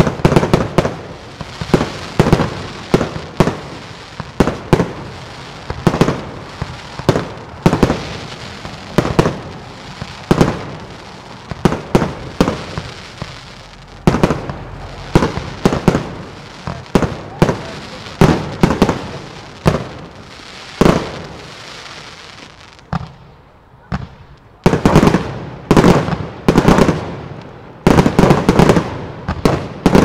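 Aerial fireworks display: a steady run of launches and bursts, about one to two bangs a second, each with a short ringing tail. After a brief lull near the end, a faster, denser volley of shots follows.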